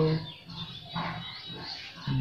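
A man's speaking voice trailing off at the start, then a quieter stretch with faint voice-like fragments over low background sound.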